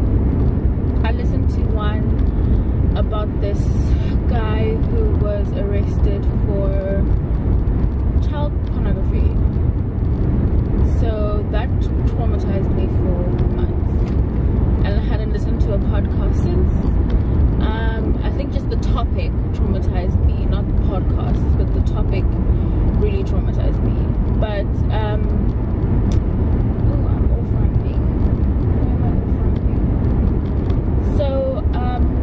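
Steady low rumble of road and engine noise heard inside a moving car's cabin, under a woman's talking.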